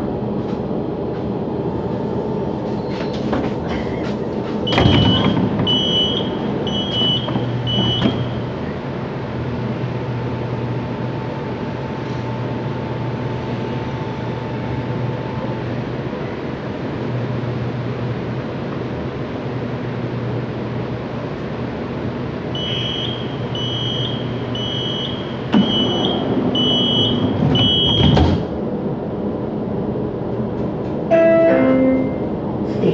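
Light-rail car standing at a platform with its equipment humming steadily. A high door chime beeps about once a second, four times about five seconds in after a thump, and six times near the end. The doors then shut with a thud.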